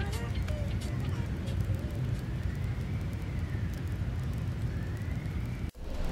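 Outdoor city ambience: a steady low rumble, with a faint high tone rising and falling slowly in the background. It cuts off abruptly near the end.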